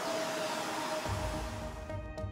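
Vacuum cleaner hose sucking on a speaker woofer's dust cap to pull the dent back out; the rushing suction noise fades away near the end.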